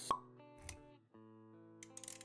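Animated-intro sound design: a short, sharp pop just after the start, then a soft low thud, over quiet sustained synth-like music chords that break off briefly about halfway and come back.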